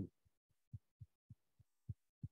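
A run of faint, soft, low thumps, about three a second, with near silence between them.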